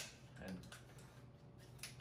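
Fading tail of a sharp metallic clack at the very start, then near quiet with a few faint clicks and taps from handling a JP GMR-15 9mm carbine's action and charging handle.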